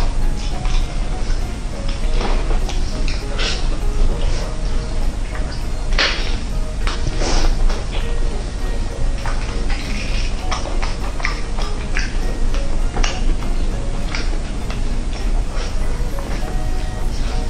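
Background music under the close-up mouth sounds of someone eating roast chicken by hand: chewing and smacking, with short clicks scattered throughout.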